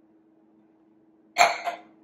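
A single short cough about a second and a half in, over a faint steady low hum.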